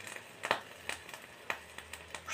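Faint, irregular pops and crackles from a pan of vegetable stew cooking on a gas burner, with water just added to the hot pan.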